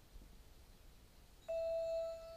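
After about a second and a half of near-quiet, a single steady chime-like electronic tone starts suddenly and holds: the opening note of the music of an animated promotional clip.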